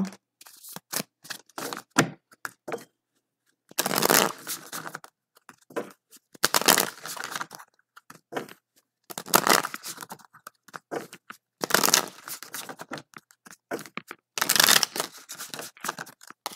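A tarot deck being shuffled by hand: about five short rustling bursts of cards sliding and slapping together, each about a second long, with small clicks of card on card between them.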